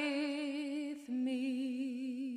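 A woman singing solo without accompaniment, holding long notes with a wide vibrato. About halfway through there is a short breath, then she steps down to a lower held note that slowly fades.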